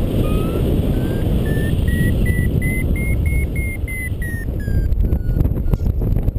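Paragliding variometer beeping about three times a second. Its pitch climbs steadily, then eases down slightly before the beeps stop about five seconds in: the sign of the glider climbing in a thermal, with the climb rate then slackening. Strong wind noise on the microphone runs underneath.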